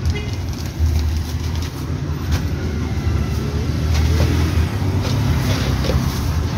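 A steady low rumble throughout, with faint rustling of a plastic bag and the soft patter of potting soil being poured into a clay pot.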